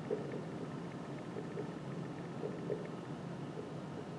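Dry-erase marker writing on a whiteboard: a scatter of faint, short stroke sounds over steady room hum.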